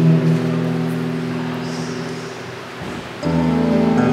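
Acoustic guitar played live: a chord rings and slowly dies away, then a new chord is struck a little after three seconds in.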